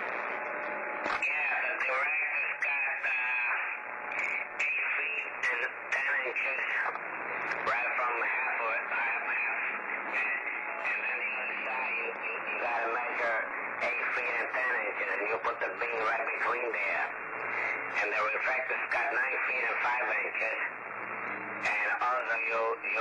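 A man's voice received over a CB radio on lower sideband, sounding thin and narrow with static hiss underneath as the other station talks. It starts abruptly at the beginning, as the far station keys up.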